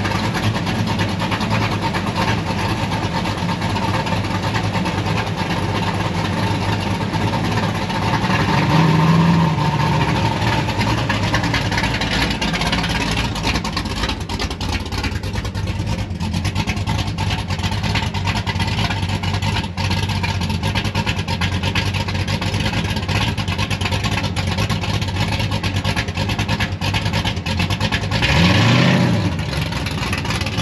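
Classic cars' engines running as they drive slowly past one after another. There is a louder swell about nine seconds in and a quick rising rev near the end.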